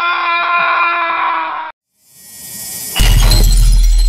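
Title-card transition sound effects: a held musical chord that cuts off abruptly, then a rising whoosh into a loud crash like shattering glass with a deep boom under it, about three seconds in.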